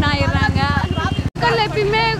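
A woman talking, over a low rumble of a vehicle engine. The sound cuts out for an instant a little past the middle, then her speech resumes.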